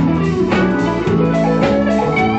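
Live blues band playing an instrumental passage: electric guitars over keyboard and a drum kit keeping a steady beat.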